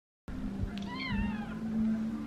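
After a moment of silence a steady low hum starts, and a cat meows once, a short high cry that falls in pitch, about a second in.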